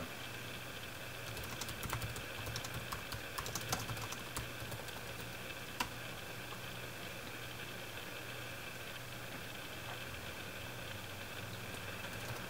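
Typing on a computer keyboard: a run of quick keystrokes from about a second in to about halfway, ending with one sharper key click, then only a steady low hum.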